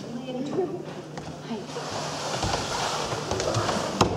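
A large cardboard box dragged across a wooden stage floor, a steady scraping rasp that starts a little under two seconds in and runs on, with a low rumble added partway through.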